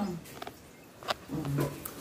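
A brief, low, held vocal sound from a person, like a hum or grunt, comes just after a light click about a second in.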